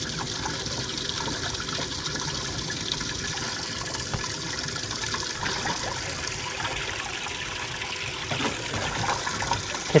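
Livewell pump spraying water from its fill pipe into a bass boat's livewell, a steady splashing and trickling that aerates the water for the fish held in it.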